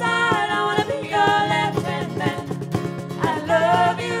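Live band playing a pop song: sung vocals over strummed acoustic guitar and keyboard, held at a steady, loud level.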